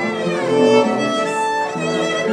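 Violin played with the bow: a melody of notes that change every fraction of a second, some held a little longer, with more than one pitch sounding at a time.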